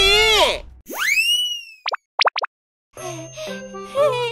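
Cartoon sound effects: a rising swoop, then four quick pops, after the tail of a character's shout. A brief silence follows, and light children's background music starts about three seconds in.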